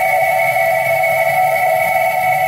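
Electronic music: steady sustained tones, one middling and one higher, held unchanged over a faint, grainy low layer.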